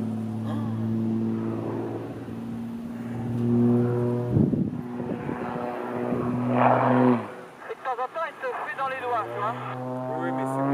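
Extra 300L aerobatic plane's six-cylinder Lycoming piston engine and propeller droning steadily overhead, pitch shifting slightly. About seven seconds in the drone drops away into a couple of seconds of pulsing, wavering sound during the manoeuvre, then the engine note returns and rises near the end.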